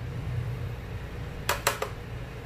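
Three quick, light taps about a second and a half in, over a steady low hum.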